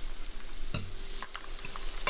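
Breaded ham-and-cheese rolls sizzling steadily as they shallow-fry in hot oil in a pan. A few light knocks of metal forks against the pan come as the rolls are turned, the strongest just before a second in.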